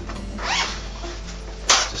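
The two zips of a snorkel carry bag's main compartment being pulled open: a rasping run about half a second in, then a louder, sharper one near the end.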